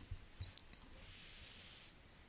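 A few faint clicks in the first half-second over quiet room tone, then a soft high hiss.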